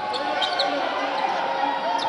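Basketball being dribbled on a hardwood court over the steady crowd noise of a large arena, with faint voices in the background.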